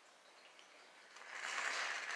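Dead silence for about a second, then a faint steady hiss of room noise.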